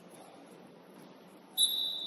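A referee's whistle blown once, a loud, steady, high-pitched blast starting about a second and a half in over quiet gym ambience.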